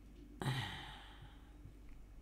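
A woman sighs once: a sudden breath out about half a second in, with a low voiced edge that falls in pitch and fades within a second.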